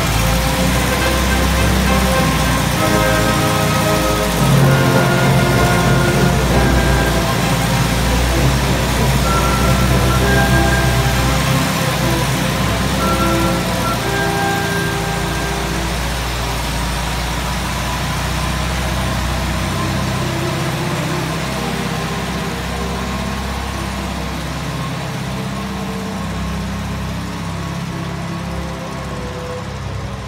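Air-cooled flat-four engine of a 1951 VW Samba bus running as the bus drives off, growing steadily fainter as it pulls away, with music playing alongside.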